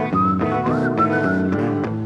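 Rock band playing an instrumental passage: a semi-hollow electric guitar plays chords over bass and drums. A high, thin melody line slides up between its notes above them.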